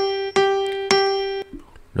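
Electric keyboard in a piano tone playing the closing three notes of a sight-reading phrase, "son son son": three struck notes of the same pitch, each ringing and fading, stopping about a second and a half in.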